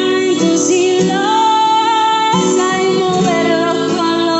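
A woman singing a Spanish song while accompanying herself on a classical guitar, holding one long high note in the middle before the melody moves on.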